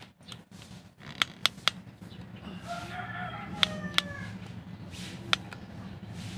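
A rooster crowing once, a call of about a second and a half that drops in pitch at the end, beginning about two and a half seconds in. Several sharp taps come before and after it, over a steady low hum.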